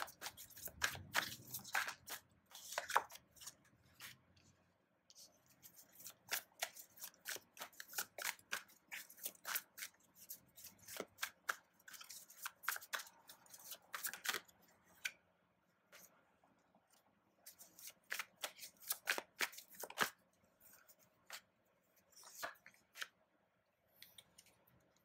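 A deck of tarot cards being shuffled by hand: quick, irregular runs of crisp clicks and snaps as the cards slide against each other, broken by a few short pauses.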